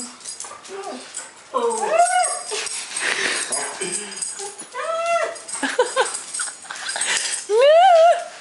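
A husky whining and yowling excitedly in a series of short rising-and-falling calls as it greets its owner. The loudest call rises sharply near the end.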